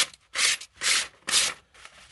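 A folding knife's blade slicing through a sheet of paper in four quick strokes, about two a second, each a short rasp.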